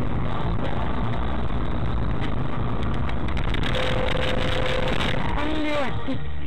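Engine and road noise inside a moving car, picked up by a dashcam microphone. A steady tone sounds for about a second about two-thirds of the way through, and a voice starts near the end.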